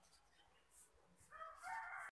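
Quiet background with a faint, distant animal call starting about a second and a half in and holding to the end.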